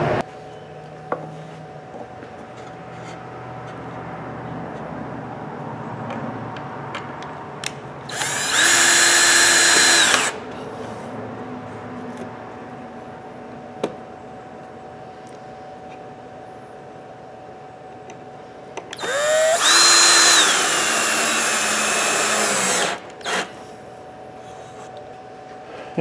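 Ridgid cordless drill/driver driving screws into a wooden board: two runs of a steady motor whine, a short one of about two seconds and later a longer one of about four seconds that rises in pitch as it spins up. A brief blip of the motor follows the second run.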